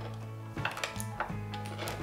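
Light metallic clicks and clinks of a guitar wiring harness (potentiometers, pickup switch and their wires) being handled and set down, a handful of small taps over soft background music.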